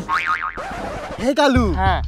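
Cartoon 'boing' sound effects: a wobbling, warbling spring twang, then descending comic swoops, with a low steady music bed coming in about one and a half seconds in.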